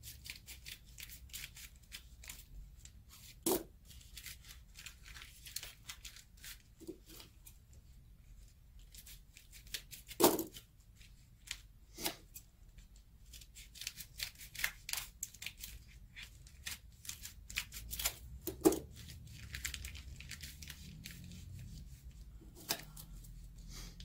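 Scissors snipping through white paper in quick runs of short cuts as strips of fringe are cut, with paper rustling and a few louder, sharper clicks.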